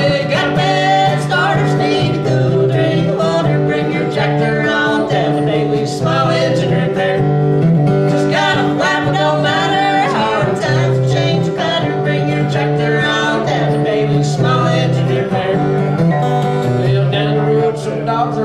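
Live acoustic country-folk song: a steel-string acoustic guitar strummed steadily under singing.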